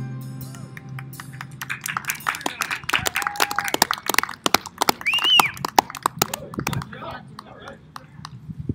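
The band's final chord rings out and fades in the first second or so, then a small crowd claps sparsely with a short rising-and-falling cheer about five seconds in.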